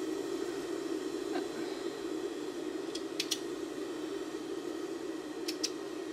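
Industrial overlock sewing machine's motor still running on after being switched off, a steady hum while it slowly powers down. A few faint short clicks about halfway through and near the end.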